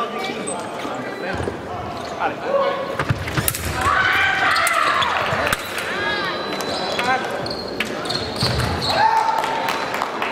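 Fencers' footwork on a sabre piste in a large echoing hall: stamping, thuds and shoe squeaks, with voices and calls around the hall.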